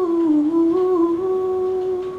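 A woman humming a wordless closing line with no guitar, her pitch stepping down and then settling on one held note that fades near the end.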